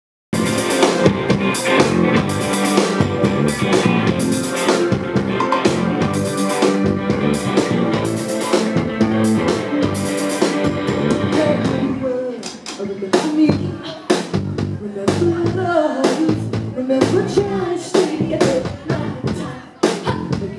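Live rock band playing with electric guitar and drum kit. The music is dense and loud for about the first twelve seconds, then thins out to separate drum hits with a melodic line over them.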